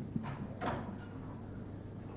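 Three light knocks and taps within the first second, from things handled on a lectern close to its microphones, over a low steady hum.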